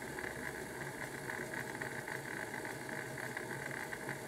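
Bachmann OO gauge model of a GWR 4575 class Prairie tank running steadily in reverse on its track: a continuous whir from the motor and gearing, with the wheels rolling on the rails.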